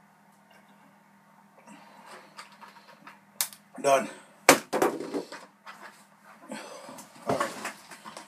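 A plastic gallon milk jug put down hard on a table, one sharp knock, just after a man says "done".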